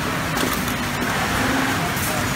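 Steady mechanical noise of an electronically controlled cylinder-arm pattern sewing machine running in a garment workshop, with a couple of light clicks.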